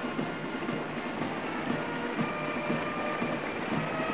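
Brass band music heard faintly in a large arena, its held notes thin against a steady, dense rumble of noise.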